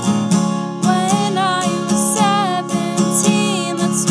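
Acoustic guitar strummed in a steady rhythm, with a woman's voice singing over it from about a second in: a live unplugged song.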